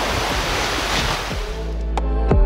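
Sea surf washing ashore as a steady rush, fading out about one and a half seconds in as music with a deep bass and a beat comes in.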